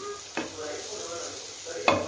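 Onion-tomato masala sizzling in a non-stick frying pan as a perforated metal spatula stirs it, with two knocks of the spatula against the pan, the louder one near the end.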